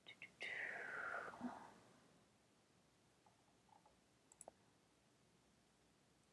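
Faint computer mouse clicks while a shelf list is scrolled, with a soft breathy vocal sound about a second long near the start, falling in pitch. The rest is near silence: room tone.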